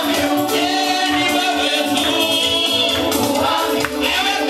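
Gospel praise music: a choir of voices singing together over a steady bass beat.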